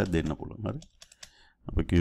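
Computer keyboard keys tapped as text is deleted and retyped, with a voice speaking over the first part and again near the end; a few faint key taps fall in a short quiet gap about halfway.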